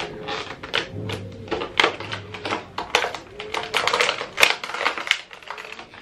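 Stiff clear plastic packaging of a perfume gift set crackling and clicking in quick, irregular snaps as hands work at it, trying to pull the items out.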